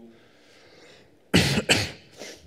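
A man coughing twice in quick succession into his hand, about a second and a half in.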